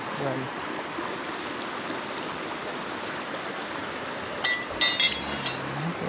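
Steady rush of a flowing stream, with a short burst of sharp clicks about four and a half seconds in.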